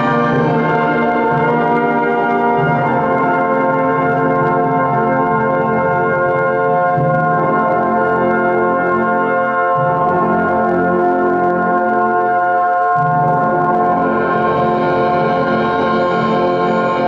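Brass band playing a slow passage of long held chords.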